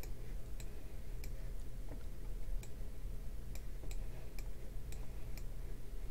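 Computer mouse clicking, a dozen or so short sharp clicks at an irregular pace of roughly two a second, as Street View is stepped along a road. A steady low hum runs underneath.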